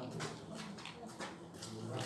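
Quiet voices of people talking in the background.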